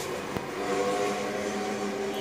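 A running motor hums steadily, holding several constant pitches over a light background noise.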